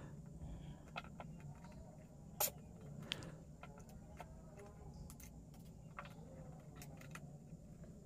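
Faint handling of electrical control wire at a small panel board: scattered light clicks and rustles as the wire is bent and fed to the terminals of a Sonoff switch and a contactor, with one sharper click about two and a half seconds in. A low steady hum lies underneath.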